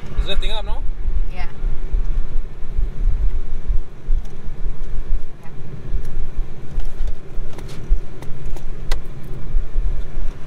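Cabin noise of a Chevrolet TrailBlazer SS being driven: a steady low engine and road rumble, with wind coming in through the open driver's window.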